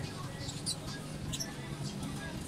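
A group of puppies eating diced carrot from a stainless steel bowl, played at double speed: chewing and nosing at the bowl, with short high squeaks scattered through, over a steady low hum.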